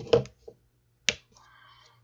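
Two short, sharp clicks about a second apart, the first with a brief low thump around it.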